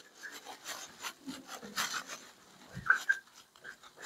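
Marker pen writing on a whiteboard: a string of short, faint scraping strokes, with a slightly louder squeaky stroke about three seconds in.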